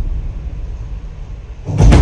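Dramatic backing music: a deep booming drum hit dies away, and a second loud hit strikes near the end.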